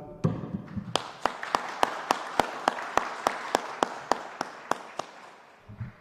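A small group applauding, with one pair of hands close to the microphone clapping loud, even claps a little over three times a second. The applause dies away about five seconds in.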